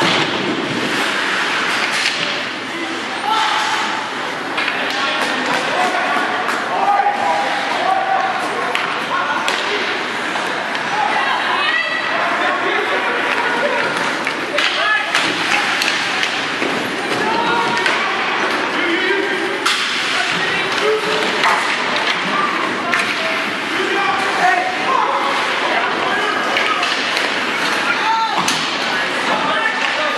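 Ice hockey game in play: indistinct voices of spectators and players throughout, with repeated sharp thuds and slams of the puck and players hitting the boards.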